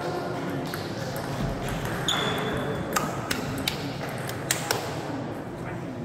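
Table tennis rally: the ball clicks sharply off bats and table, a run of hits roughly a third of a second apart starting about two seconds in and ending near the five-second mark. A murmur of voices runs underneath.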